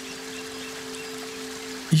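Soft background music: a sustained synth-pad chord held steady over a faint hiss.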